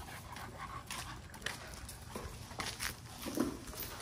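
Several pit bull dogs moving about at close range: faint scuffs and clicks of paws and bodies, with a short whine about three seconds in.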